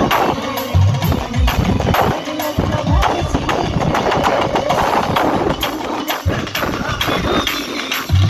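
Live percussion-led folk music played by an ensemble, a fast steady drumbeat with repeated sharp strokes.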